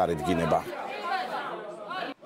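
Speech only: people talking, louder for the first half-second, then quieter talk.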